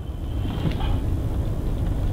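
Inside a car's cabin while it drives slowly down a city street: a steady low engine and road rumble.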